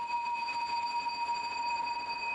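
Several steady high-pitched tones held together over a faint hiss, a sustained background drone with no change in pitch.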